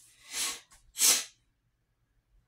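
A man sneezing: a softer breathy intake, then a louder, hissy burst about a second in.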